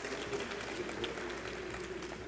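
Faint scattered audience applause in a large hall, thinning out, over a steady low hum.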